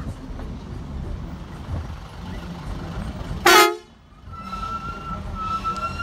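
A truck's engine runs low on a rough dirt road. About three and a half seconds in comes one short, loud blast of a vehicle horn. After a brief drop, a steady high tone sounds for about two seconds near the end.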